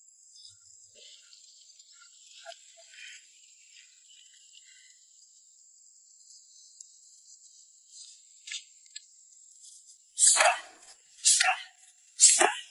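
Two loud, sharp hits about a second apart near the end: a bare shin kicking a hand-held steel pipe. Before them only a faint steady high hum.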